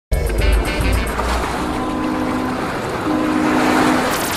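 Electronic intro music for an animated logo. It opens with a ticking beat over heavy bass for the first second and a half, then becomes a rushing, whoosh-like noise under a held low chord that grows slightly louder near the end.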